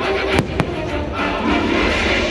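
Aerial fireworks shells bursting: two sharp bangs close together about half a second in, over the show's orchestral music soundtrack.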